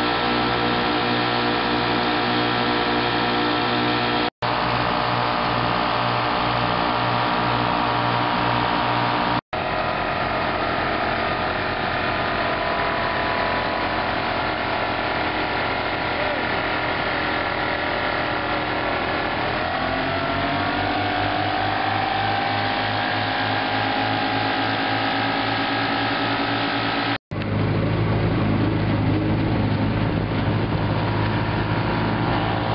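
Two antique outboard motors running at speed, a steady engine note whose pitch shifts up about two-thirds of the way through. The sound breaks off abruptly three times, and after the last break a different engine note takes over.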